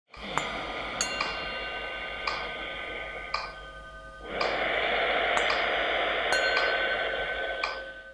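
Intro music of chime notes struck at an irregular pace, each one left ringing, over a soft steady wash of sound that swells about four seconds in.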